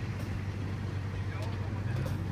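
A vehicle engine running steadily, with a constant low hum over a wash of noise.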